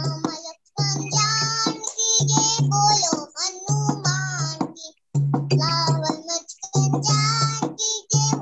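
A young girl singing a devotional bhajan over a low steady harmonium accompaniment, in phrases with gliding pitch. The sound drops out twice for a moment, as over a video call.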